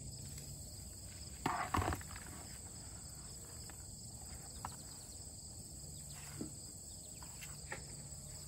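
Steady high chirring of field insects in the grass. A brief rustle and knock about one and a half seconds in, with a few faint ticks later.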